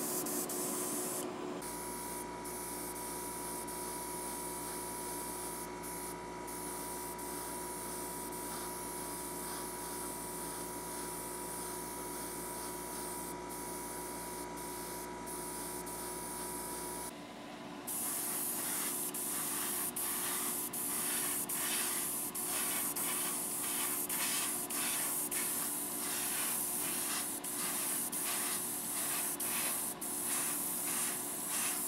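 Airbrush spraying paint onto a small diecast car body: a steady hiss of air over a low steady hum. In the second half the hiss comes in short regular pulses, about two a second, as the trigger is worked.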